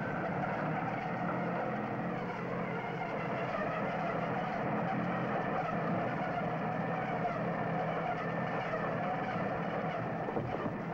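Engine of a heavy tree-harvesting logging machine running steadily, with a continuous drone and a slightly wavering whine.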